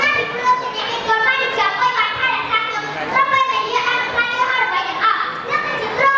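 A young boy speaking continuously into a microphone, delivering a prepared speech.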